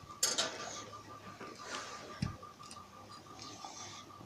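Light scattered taps and clinks: a sharp click about a quarter second in and a dull knock a little after two seconds, over a faint steady ticking.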